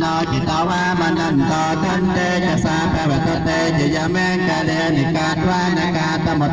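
Theravada Buddhist monks chanting in unison, a steady, continuous low-pitched recitation amplified through a microphone.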